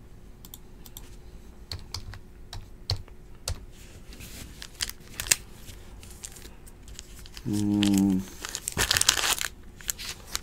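Foil trading-card pack wrappers being torn open and crinkled by hand, with scattered crackles and clicks, and a longer, louder tearing rip near the end. A brief steady low hum sounds about three-quarters of the way through.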